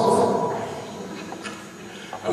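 A man's voice through the hall PA ending, its echo dying away in the large hall over about a second, then a lull of low room noise.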